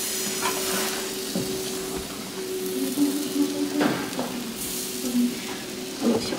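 Pancake batter sizzling as it fries in a hot frying pan on an electric stove, with a steady hum underneath and a few brief clicks of the pan and utensils.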